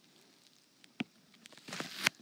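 Quiet room tone with one sharp tap about a second in and a faint scratchy sound near the end, from a stylus on an iPad screen as an answer is circled.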